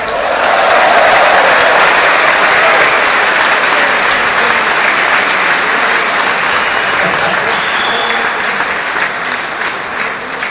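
Concert audience applauding in a large hall right after a song ends. The applause slowly dies down.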